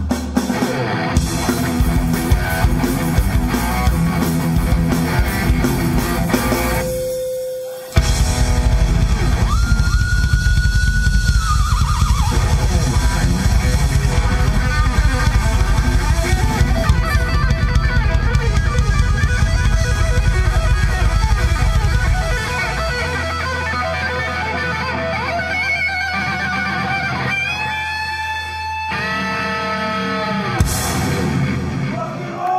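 Live instrumental rock: an Ibanez electric guitar plays lead over bass and drums. About seven seconds in the band drops out briefly under a single held note, then crashes back in full; later the guitar holds long high notes and the last third is quieter over a steady low bass note.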